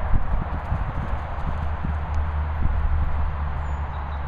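A Doberman's paws thudding on grass turf as it runs close by, a quick uneven run of soft thumps in the first second or so, followed by a steady low rumble.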